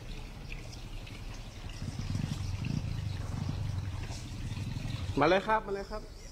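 Low, rough rumble of a motorbike engine on a muddy road, louder in the middle and stopping about five seconds in, with water trickling. A short voice sounds near the end.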